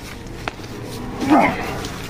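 A single short, sharp vocal cry, rising then falling in pitch, about a second and a half in, with a faint click shortly before it.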